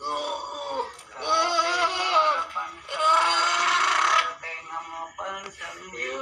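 A person wailing and crying out in long, drawn-out, wavering cries. The loudest and harshest is a scream about three seconds in, followed by quieter broken moans.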